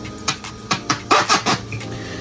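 Plastic twin-bubble airlock being pushed into the grommet of a plastic fermenting bucket's lid: a series of small, sharp clicks and taps.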